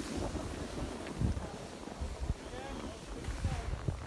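Wind rumbling on the microphone over the hiss of skis sliding on packed snow, with faint voices in the background.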